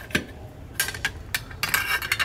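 The metal outside cover of a Townsteel Interconnect electronic door lock clinks and knocks lightly as it is handled and fitted into place. There are a few separate sharp clicks, then a quick cluster of them near the end.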